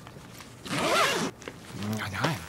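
A zipper pulled closed on a packed suitcase: one quick zip about a third of the way in, its pitch rising then falling, followed near the end by a shorter, lower sound.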